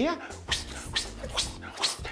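A man's exaggerated vocal noises: a drawn-out falling voice, then three short breathy whooshes blown out in a row.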